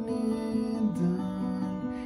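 Acoustic guitar playing sustained chords in a slow song, the chord changing about halfway through and again near the end.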